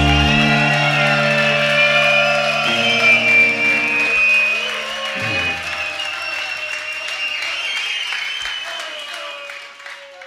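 Final chord of a live punk rock song ringing out on electric guitars and bass, its low notes dropping away one after another over the first five seconds. Crowd cheering and shouting carries on, getting quieter and fading out near the end.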